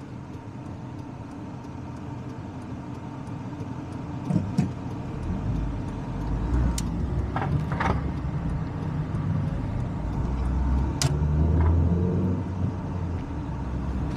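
Car driving along a city road: low engine and tyre rumble that grows louder from about five seconds in as the car picks up speed, with a few faint clicks.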